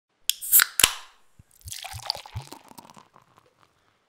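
Beer being opened and poured into a glass: three sharp clicks in the first second, then about a second and a half of fizzing with a few low glugs that fades away.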